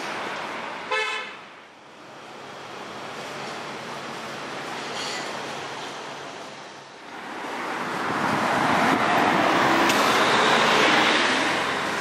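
A short car horn toot about a second in, over steady street traffic noise. About seven seconds in, a broad rush of road traffic swells up and becomes the loudest sound.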